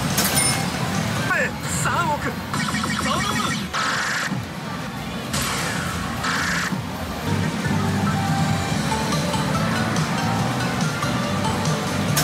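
Pachinko machine electronic music and sound effects, in short pieces that change abruptly every second or so, with chirping rises in pitch in the first few seconds and a steadier tune in the second half.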